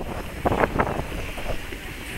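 Crowd ambience of a busy outdoor ice rink: scattered voices and skates moving on the ice, with wind rumbling on the microphone.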